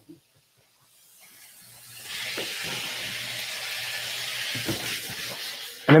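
Food sizzling in a hot frying pan as yellow heirloom tomatoes go in with diced peppers: the sizzle builds up over the first two seconds, then holds steady.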